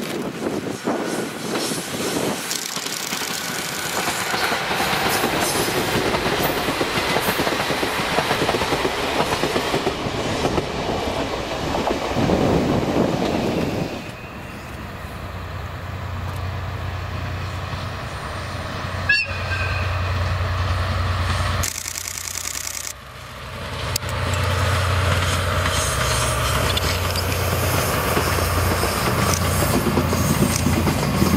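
Two DE10 diesel-hydraulic locomotives with V12 diesel engines running double-headed, hauling old-type passenger coaches past. At first there is a broad rumble of engines and rolling wheels; in the second half a steady low engine hum grows louder as the locomotives approach.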